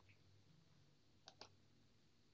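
Near silence with two faint, quick computer mouse clicks about a second and a quarter in: a mouse button clicking a web link.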